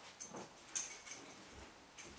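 A small knife carving into a pumpkin's rind: short squeaky scraping, with one sharp crisp click a little under a second in, the loudest moment.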